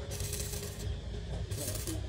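Stick (arc) welding on a steel square-tube roof frame: the electrode's arc crackles and hisses in two bursts, the first about three-quarters of a second long and the second shorter, near the end.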